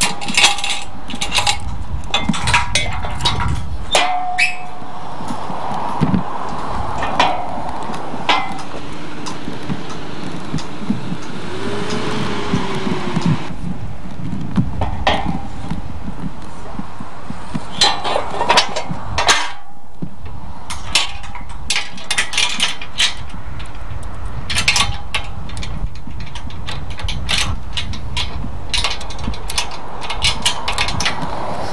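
Footsteps crunching on a gravel road, with irregular clinks and crunches of stones underfoot over a steady low rumble.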